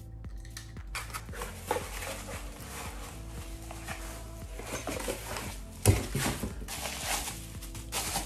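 Soft background music under cardboard and packing handling: a utility knife cutting the tape on a small box, rustling of cardboard and packing, a sharp knock just before six seconds in, then bubble wrap crinkling as an item is unwrapped.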